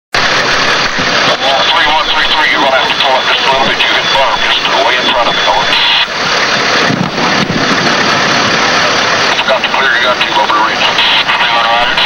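Indistinct voices over loud, steady vehicle noise, with the dull, muffled sound of worn field-camcorder tape audio; the talk comes and goes throughout but cannot be made out.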